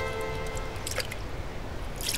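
A held musical note ends under a second in, followed by pink lemonade being poured from a plastic jug into a cup, with a few drips.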